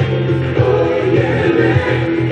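Background music: a song with singing over a steady beat.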